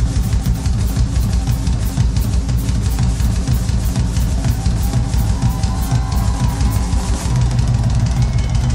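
Rock music: a full band with a driving drum-kit beat over heavy bass.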